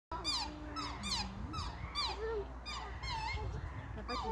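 Black swans calling during their courtship display: a run of high, falling whistle-like notes about twice a second, with lower held and gliding notes between them.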